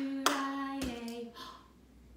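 A woman singing a held note, with a sharp hand clap about a quarter second in. Near the one-second mark the singing stops with a duller thump, a pat on her chest, and the sound falls away.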